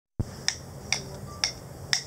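Four finger snaps, evenly spaced about half a second apart, counting in the tempo for the guitars.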